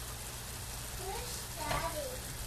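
Pot of fire-roasted tomatoes with onions, garlic and olive oil simmering on the stove, a steady soft sizzle. A faint voice comes in briefly about a second in.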